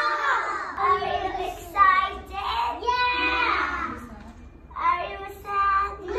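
Young children's voices singing, with held, wavering notes and a brief lull a little after four seconds.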